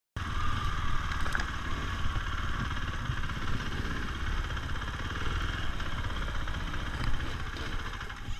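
Dirt bike engine running as the bike is ridden along a trail: a steady, rapid low pulsing with a few brief clicks.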